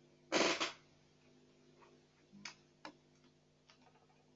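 A short loud burst of noise about half a second in, then a few faint scattered clicks over a low steady hum on an open microphone line.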